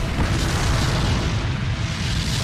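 Cartoon explosion sound effect: a loud, steady rumble with hiss over it, which neither rises nor falls.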